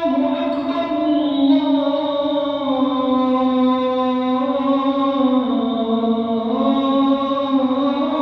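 A muezzin's male voice chanting the adhan (call to prayer): one long held melismatic phrase whose pitch steps slowly downward, then rises again near the end.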